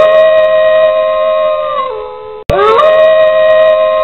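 Wolf howling: a long howl that rises at the start, holds level and drops at the end, heard twice in a row. The second howl starts abruptly about two and a half seconds in.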